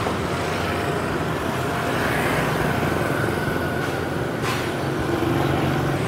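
Steady city street traffic: motorbikes and cars running and passing.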